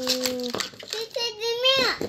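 A young child's voice calling out without clear words, drawn-out and high-pitched, falling away near the end.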